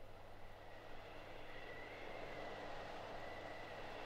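A quiet atmospheric passage from a vinyl record: a soft rush of noise slowly swelling in loudness, with a faint wavering high tone over a steady low hum.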